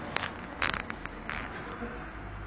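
Handling noise from a phone held up to a screen: a quick run of sharp clicks and taps, loudest a little past half a second in, over a steady low hum.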